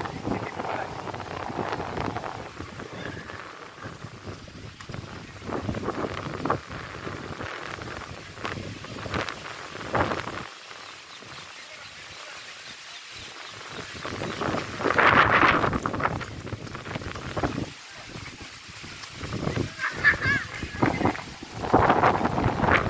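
Voices talking and calling outdoors, loudest about two-thirds of the way in, over wind noise on the microphone.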